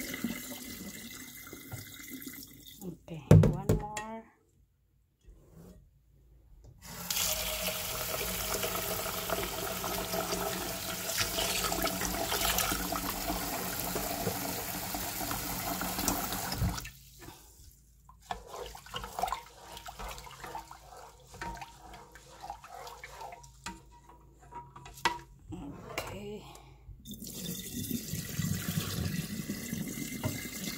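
Rice being rinsed in a rice cooker's inner pot at a stainless steel sink. Cloudy rinse water is poured off into the drain, with one sharp knock about three seconds in. Then a tap runs steadily into the pot for about ten seconds, followed by quieter sloshing and light clicks from a ladle stirring the rice, and the water is poured off again near the end.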